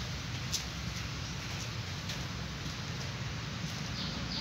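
Steady low hum and hiss, with a kitten eating rice from a metal bowl: one sharp click about half a second in and a few faint ones.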